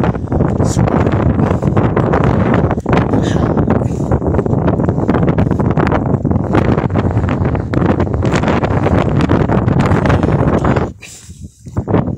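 Wind buffeting the microphone, a loud low rumble that drops away suddenly near the end.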